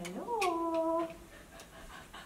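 A single drawn-out vocal call, rising in pitch and then holding for about a second before it stops.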